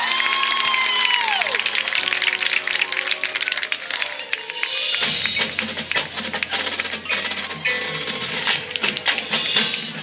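Marching band playing: held notes over a dense run of quick percussion taps, with a sliding note that rises and then falls away in the first second or so, and fuller low notes joining about halfway through.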